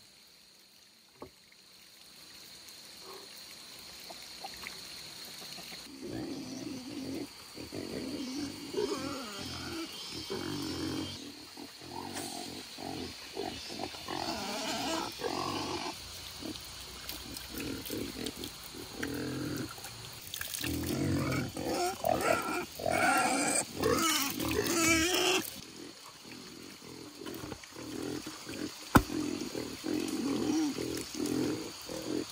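Pigs grunting and squealing in irregular bursts. The calls build up from a few seconds in and are loudest and shrillest about two-thirds of the way through. A single sharp knock comes near the end.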